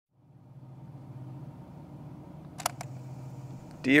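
A low steady hum fades in, broken by two quick sharp clicks about two and a half seconds in.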